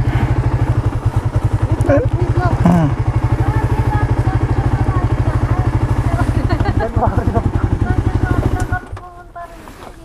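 Suzuki GSX-R150 single-cylinder four-stroke motorcycle engine idling with a steady, rapid low pulse, then switched off near the end, cutting out abruptly.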